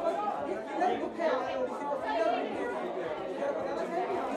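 Several voices talking at once, softer than the on-mic speech either side: off-mic chatter and questions from the press in a large room.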